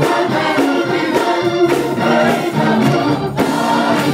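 Gospel choir singing with a steady beat behind it.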